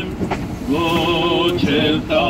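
A singing voice holding long, slow notes with vibrato, in an Armenian church hymn. The singing drops out at the start, returns with a note that slides up, and changes note about a second and a half in.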